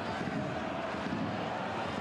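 Steady crowd noise from a football stadium's stands, an even wash of sound with no distinct cheer or chant.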